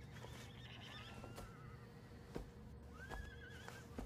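Two faint horse whinnies, each a wavering call, the first about half a second in and the second near the end, over a low steady hum.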